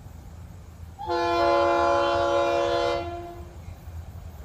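Florida East Coast Railway locomotive 425's air horn sounding one long chord of about two seconds, starting about a second in, as the train approaches the grade crossing. A steady low rumble lies underneath.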